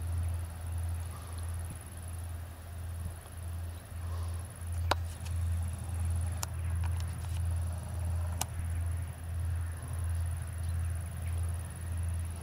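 Long freight train of hopper wagons passing in the distance: a low rumble that swells and fades about one and a half times a second. Three sharp clicks come through in the middle.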